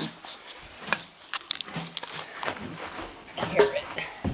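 A horse's hooves knocking a few times on the floor of a horse trailer as the horse is backed out, with a short pitched vocal sound just before the end.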